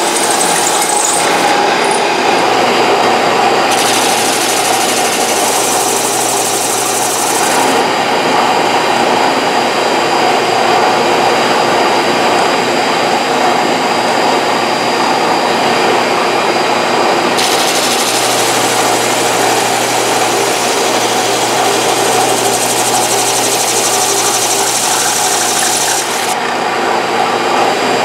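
A shop-built drum thickness sander runs steadily while a guitar headstock on a pinned jig is pushed under the sanding drum and drawn back to bring it to thickness. Twice the hiss of abrasive on wood rises over the motor: a few seconds in for about four seconds, and again from the middle for about eight seconds.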